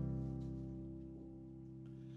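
An electronic keyboard plays one chord, held as the song's opening and slowly fading.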